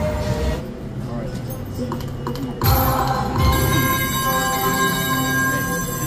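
Casino floor ambience: slot machines giving out electronic jingles and ringing tones over background music and chatter. A short loud rush of noise comes about two and a half seconds in, and several steady electronic tones sound together from then on.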